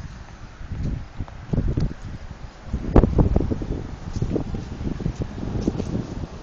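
Wind buffeting the phone's microphone in irregular low gusts, loudest about three seconds in.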